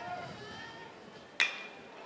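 A baseball bat striking a pitched ball: one sharp crack with a brief ring about one and a half seconds in, over a faint murmur from the stands.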